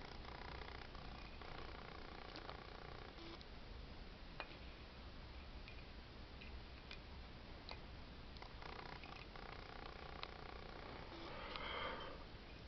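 Faint clicks of alligator clips and wire leads being handled and clipped onto a bulb socket's plug. A faint pitched hum comes and goes in the background.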